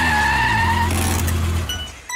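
Car sound effect: a low engine rumble with a high squealing tone over it, like tyres squealing, cutting off sharply near the end.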